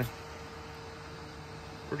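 DeWalt DCE512B 20V brushless battery fan running, a steady whoosh of moving air with a faint steady hum.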